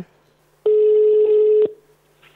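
Telephone ringback tone of an outgoing call, ringing at the far end and not yet answered: one steady beep about a second long, starting just over half a second in.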